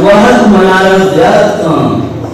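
A man's voice reciting poetry in a slow chant, drawing out long held notes, fading out near the end.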